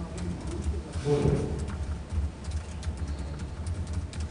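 Low, steady hum of a conference hall's sound system with scattered small clicks, and a brief low murmured voice about a second in.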